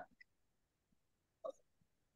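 Near silence: room tone, broken once by a very short, faint blip about one and a half seconds in.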